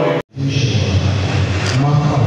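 Held, sung church music cuts off abruptly about a quarter second in with a brief dropout, then voices over a steady rumble.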